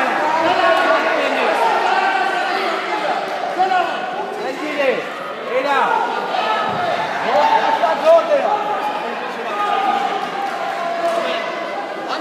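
Many people's voices overlapping and calling out in a large sports hall during a judo bout.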